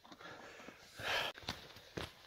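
A person breathing out once, a short faint breath about a second in, followed by a couple of light clicks.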